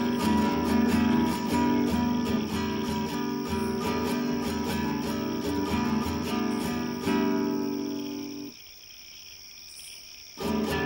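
Acoustic guitar strummed, chords ringing out, until it stops about eight and a half seconds in.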